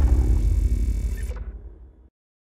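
Logo-intro sound effect dying away: a deep rumble with faint mechanical clicking that fades steadily and is gone by the end.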